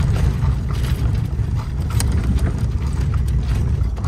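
Horse-drawn Amish buggy rolling on pavement, heard from inside the cab: a steady low rumble from the wheels, with the body and fittings rattling and clicking irregularly.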